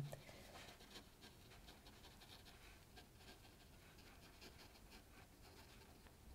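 Near silence, with faint, irregular soft taps of a watercolour brush dabbing paint onto paper.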